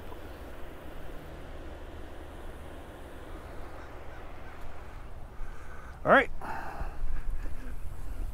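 Steady outdoor background noise at the riverbank, with one short pitched call about six seconds in, then a louder low rumble near the end.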